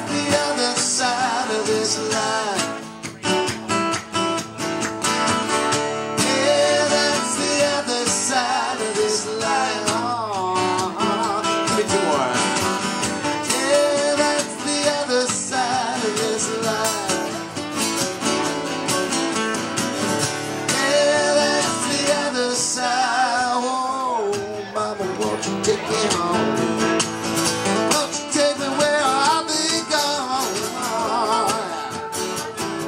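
Live acoustic band: three acoustic guitars strummed together with sung vocals carrying the melody.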